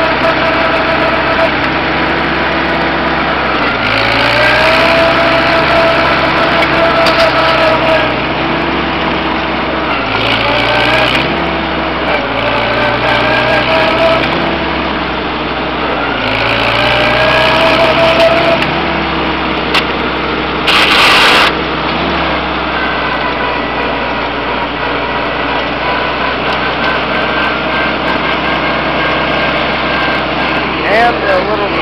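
1956 Farmall Cub tractor's small four-cylinder flathead engine running under way, its pitch rising and falling several times as engine speed changes. A short, loud rush of noise cuts in briefly about two-thirds of the way through.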